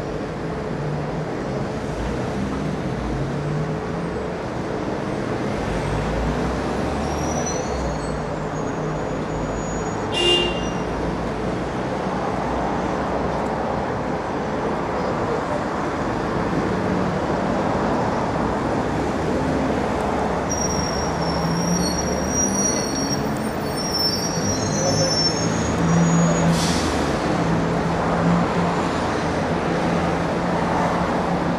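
Street ambience: a steady hum of road traffic, with a few brief high-pitched sounds and a short sharp click about ten seconds in.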